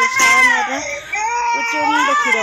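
Infant crying: a long high wail that falls away just under a second in, then a second cry after a brief break.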